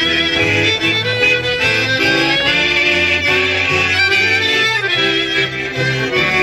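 Slovak folk dance music with fiddle and accordion playing a lively melody over a bass line.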